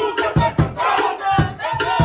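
Māori haka: a group of performers chanting and shouting in unison over heavy, regular foot stamps, about two to three stamps a second.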